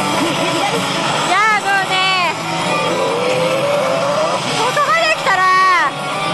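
Pachislot Hokuto no Ken Tensei no Shou slot machine playing its battle-mode game audio, with bursts of shouted voice and effect sounds about a second and a half in and again near the end, over the steady dense din of a pachinko parlor.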